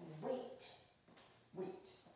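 A Field Spaniel giving two short barks, one just after the start and a second about a second and a half in.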